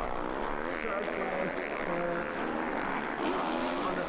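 Motocross bike engine revving on track, its pitch rising and falling as the throttle opens and closes.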